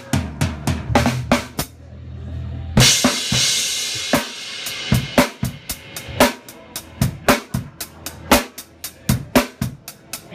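Rock drum kit played live, miked close: kick, snare and cymbal strikes at about three to four a second. A big cymbal crash lands about three seconds in and rings on, and a low held note sits under the opening seconds.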